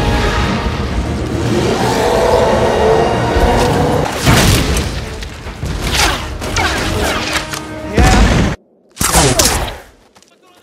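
Action-film soundtrack: a dramatic score mixed with explosion booms and sharp impact and blast effects. The sound cuts out abruptly for about half a second late on, then another hit follows.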